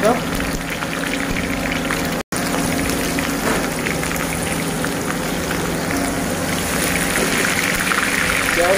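Food frying in hot oil in a wok-style kadai: a steady sizzle full of fine crackles, with a steady low hum underneath. The sound cuts out briefly about two seconds in.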